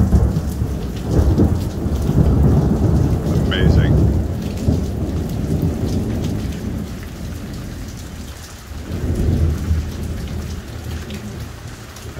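Thunder rumbling over heavy rain. The rumble is loudest over the first few seconds, dies down, then swells again about three-quarters of the way through, while the rain hisses steadily throughout.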